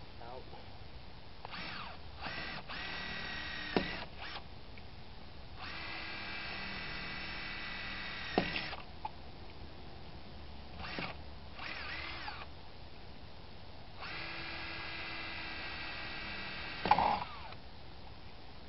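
Cordless drill run in bursts on a stripped wheel lug nut. It gives a few short blips, then runs of about one, three and three and a half seconds, each ending with a sharp knock. The last knock, near the end, is the loudest.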